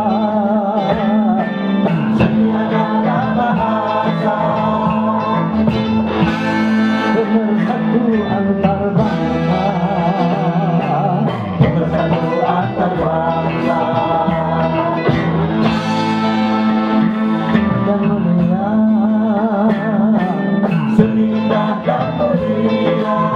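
A live dangdut band playing, with an electric guitar carrying a wavering, vibrato-laden melody over a steady low note, and singing at times.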